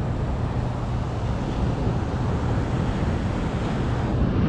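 Steady wind rushing over the microphone, with beach surf running underneath.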